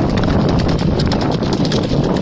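Galloping hooves of a racing bullock-cart team, a bullock and a horse yoked together on a dirt track, making a rapid, irregular clatter.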